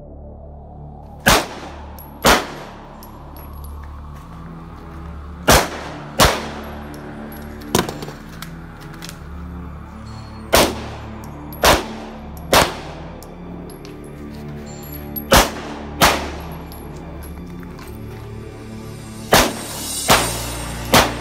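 Pistol shots fired in quick groups of two or three, about a second apart, eleven in all, one near the middle fainter than the rest. Background music plays steadily underneath.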